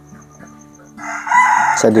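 A bird in the pheasant pens crowing: one loud, harsh call lasting under a second, starting about halfway in, over faint background music.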